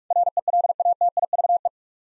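Morse code sent as a keyed audio tone at 45 words per minute: rapid beeps on one steady pitch for about a second and a half, spelling the word "relative".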